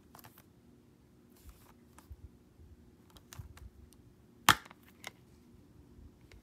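Plastic Blu-ray case being handled, with light clicks and rustles, then one sharp loud snap about four and a half seconds in as the case's clasp pops open.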